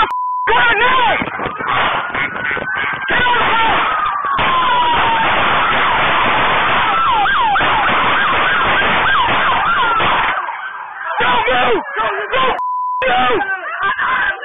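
Police car siren sounding, first a slow falling wail, then rapid up-and-down yelping sweeps about two-thirds of the way through, under loud shouting. A short, steady censor bleep cuts in at the very start and again near the end.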